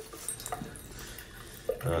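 Thin, faint trickle of water from a basin mixer tap into a ceramic sink, with a few drips. The flow dwindles because the water supply has been shut off.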